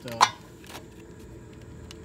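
A sharp metallic click as a hand takes hold of a small bent metal hook under a Jeep's rear body, followed by a couple of fainter clicks; a man says a short 'uh' at the start.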